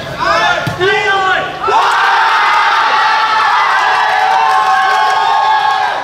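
Spectators and players cheering and shouting for a goal: one loud cheer of many voices starts about two seconds in and holds for about four seconds. Before it come single shouted calls.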